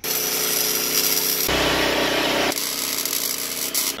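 Arc welding on a car's exhaust pipe underneath the car: a steady hiss with a faint hum running through it. It turns louder and harsher for about a second in the middle.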